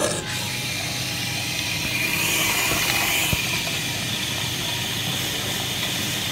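Costa Express coffee machine running as it brews and dispenses coffee into a paper cup: a steady mechanical whirr with hiss, louder for a second or so about two seconds in, with a single tick a little after that.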